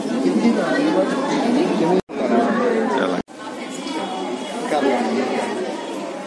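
Indistinct chatter of several people talking at once, broken by two abrupt cuts about two and three seconds in.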